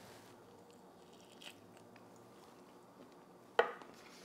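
Faint chewing of a bite of smoked pork rib. A brief, sharper sound comes near the end.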